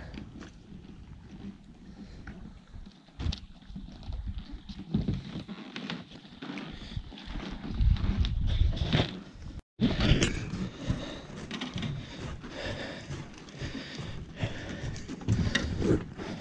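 A crappie flopping on a dock deck, making scattered light knocks, with gusts of wind buffeting the microphone.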